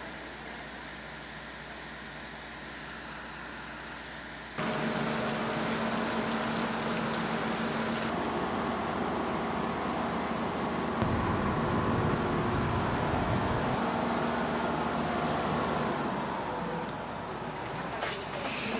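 An engine-driven generator running steadily, with a constant low hum and a few steady tones; it comes in abruptly about four and a half seconds in over a quiet hum, with a deeper rumble swelling for a few seconds near the middle.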